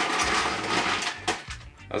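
Broken ice rattling and clinking, a dense clatter for about a second that ends in a single knock.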